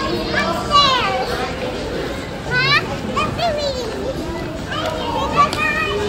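Young children's high-pitched voices calling out and squealing, one sharp rising squeal about halfway through, over a steady background hubbub.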